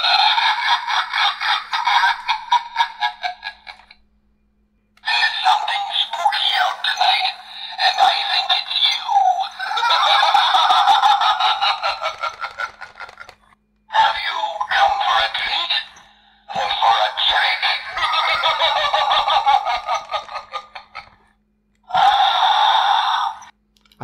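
Talking skeleton Halloween decoration playing its recorded spooky voice lines through its small built-in speaker, several phrases with short pauses between them. The voice sounds thin, with almost no bass, over a steady low electrical hum.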